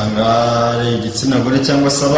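A man's voice holding one long, level-pitched hesitation sound, a drawn-out 'uhh', for about a second, then going on with a few quick speech sounds.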